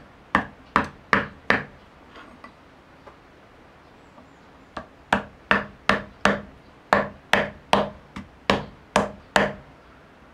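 A wooden mallet knocking metal blades into a wooden stump block. There are four sharp knocks, a pause, then a steady run of about a dozen at roughly two to three a second, each with a brief ring. The blades are being driven in upright as a width gauge for bamboo strips.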